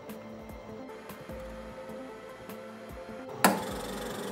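MaxiVac Alpha concentrator's ScanSpeed 40 centrifuge rotor spinning with a faint steady hum; about three and a half seconds in, its membrane vacuum pump switches on suddenly and keeps running, cut in automatically as the rotor reaches 1000 rpm.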